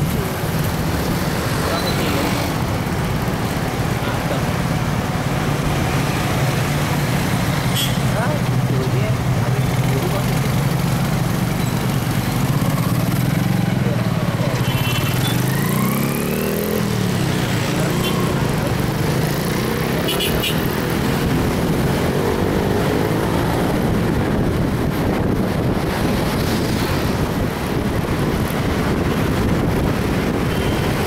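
Engine and road noise from a vehicle moving through city traffic, with a steady engine hum that rises and falls in pitch about halfway through as it speeds up and slows.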